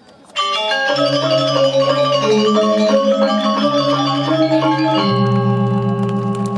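Balinese gong kebyar gamelan: the full ensemble enters suddenly and loudly about half a second in. Bronze metallophones then play quick changing ringing notes over low held bronze tones.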